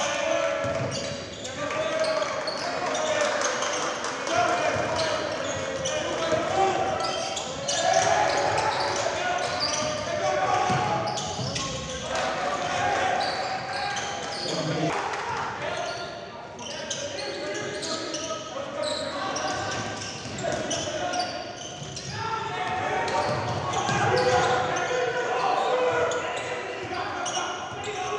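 Live basketball game sound in a gym: a basketball dribbled on the hardwood court, with players' and bench voices calling out, echoing in the hall.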